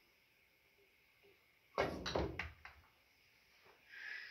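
A cue tip strikes a golf ball on a pool table with a sudden knock, followed by a couple of sharp clacks as the hard golf balls hit each other or the rail.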